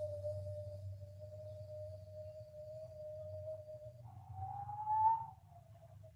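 Person whistling through pursed lips: a single, nearly pure tone with no overtones, held steady for about four seconds. It then slides up higher and drops back down near the end.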